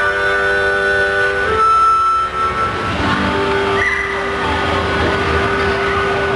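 Harmonica played through a microphone: long held chords that change every second or so, settling into one long held note for the second half.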